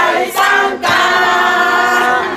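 A group of people singing together, several voices in unison, with a short break a little under a second in.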